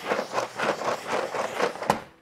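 Drawer slides rolling with a rattly, even run as a loaded drawer is pushed along them, ending in one sharp click near the end as the drawer stops.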